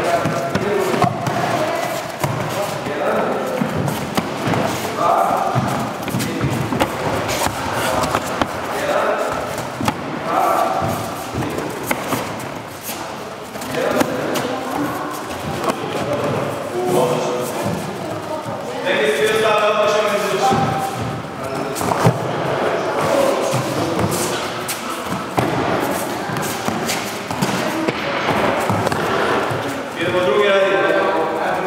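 Repeated thuds of punches in boxing-style training, with voices and background music.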